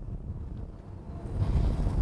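Wind rumbling on the microphone, with the noise of an approaching car growing louder in the last half-second.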